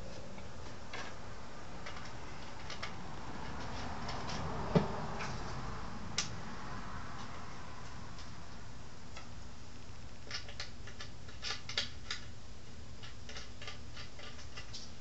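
Light clicks and taps of screws and a wooden panel being handled on a workbench, with one sharper knock about five seconds in and a cluster of small clicks near the end, over a steady background hum.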